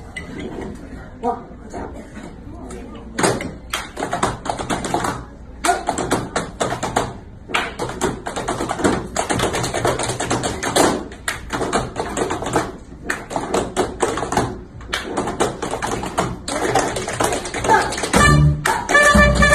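Tap shoes striking a wooden stage floor in rapid, unaccompanied tap-dance rhythms, played in phrases with brief pauses between them.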